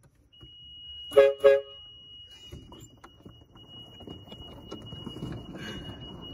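A 12-volt air horn fitted to a golf cart gives two short blasts about a third of a second apart, each a two-note honk.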